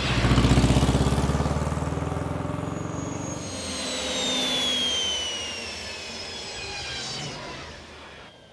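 A van's engine passing close by, a low rapid pulsing that fades over about three seconds. Then a high whine with several tones, a flying-car sound effect, glides slowly downward and fades near the end.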